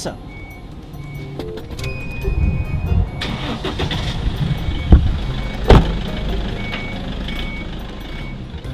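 A car engine starting and running inside the car, with a low rumble that builds up. Two sharp knocks come about a second apart near the middle.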